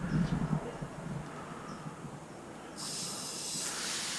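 Garden-hose water spraying under pressure through the water-powered toy blimp's launcher: a steady hiss that starts abruptly about three seconds in.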